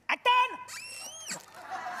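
A performer's high-pitched falsetto squeal: a short vocal yelp, then a high shriek that rises and holds for about half a second before breaking off.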